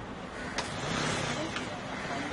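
A road vehicle going past, its noise swelling about half a second in, with voices.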